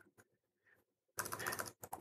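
Computer keyboard typing: a quick run of key clicks in the second half, after about a second of near silence.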